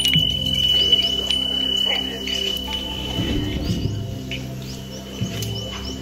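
Small brass bells of a hanging wind chime jingling and clinking as a hand handles them, over steady background music.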